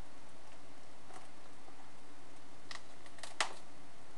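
Plastic shrink-wrap on a DVD case being picked at by hand: a few sharp crackling clicks, the loudest about three and a half seconds in.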